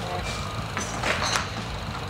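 A golf iron striking a ball off a driving-range hitting mat on a short approach shot: a brief sharp click about a second in. A steady low hum runs underneath.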